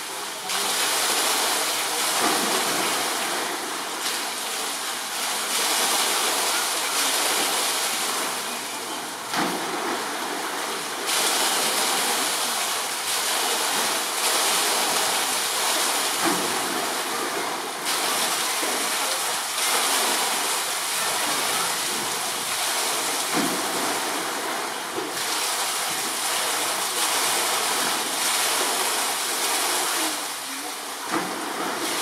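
Steady rush of running water, with a few faint low soft thuds.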